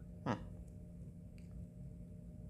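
A brief, falling "mm" of enjoyment from a man tasting ice cream, over a steady low hum.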